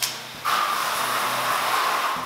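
Pressurized water fire extinguisher discharging: a short spurt right at the start, then a loud steady hiss of water spraying from the hose from about half a second in.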